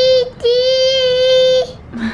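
A toddler's voice holding two long notes at one steady, high pitch, the second lasting over a second.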